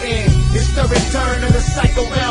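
Hip hop track: rapped vocals over a beat with heavy bass and regular drum hits.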